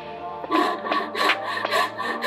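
Hand saw cutting into the end of a cedar handle blank in quick, short strokes, about four a second, starting about half a second in, with soft background music underneath.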